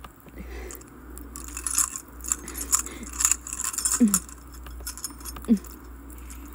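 Metal chains rattling and clinking in a jangly cluster about two to three seconds in, over a low steady hum. Two short low sounds falling in pitch follow near the end.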